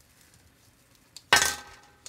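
One loud clank with a short ringing decay, a little over a second in: the bottom section of an artificial Christmas tree, released from its rubber band, hitting a table.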